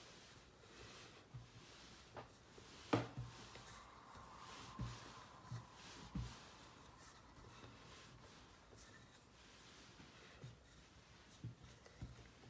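Wooden rolling pin rolling out floured puff pastry dough on a wooden board: faint, soft, irregular bumps and rubbing, with one sharper click about three seconds in.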